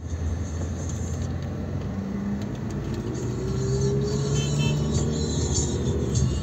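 Steady engine and road noise of a car heard from inside as it drives, the engine pitch rising slowly about halfway through.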